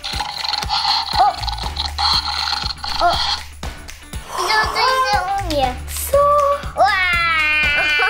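Battery-powered Jurassic World 'Blue' velociraptor toy making electronic dinosaur sounds through its small speaker as it is petted on the head: a buzzing purr for the first few seconds, then pitched raptor calls, the last and loudest starting near the end.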